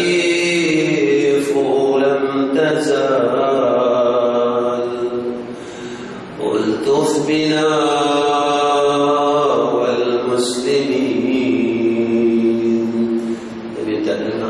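A man chanting a devotional Arabic prayer in long, drawn-out melodic lines, in two long phrases with a brief pause for breath about six seconds in.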